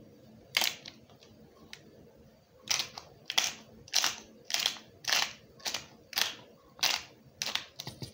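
Black pepper being dispensed from a small jar over a cooking pot: a single click about half a second in, then about ten short crisp rattling strokes, roughly two a second.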